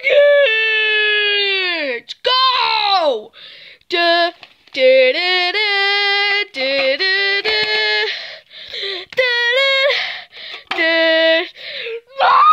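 A child's high voice singing a wordless tune: two long falling wails in the first three seconds, then short phrases of held notes stepping up and down, with breaths between them.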